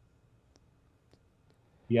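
Quiet room tone with a few faint, scattered clicks. A man's voice starts near the end.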